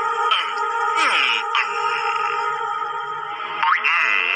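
Cartoon soundtrack: music holding steady tones, with two falling pitch-glide sound effects in the first second and a half and a quick rising glide near the end.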